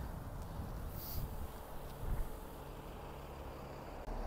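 Quiet outdoor background: a steady low rumble with a brief faint hiss about a second in and a few soft bumps around the middle.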